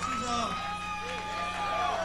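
Quiet passage of a live fusion band: MIDI guitar synth holding long, steady notes with a few short pitch bends beneath, over a low bass line.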